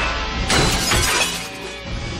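Dramatic action score with a sudden shattering crash about half a second in, its clatter dying away over the next second.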